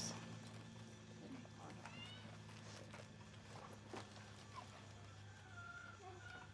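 Quiet background with a steady low hum and a few faint distant animal calls.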